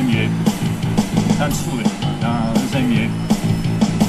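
A man singing in Russian into a microphone, accompanied by his own electronic keyboard, with a beat about once a second.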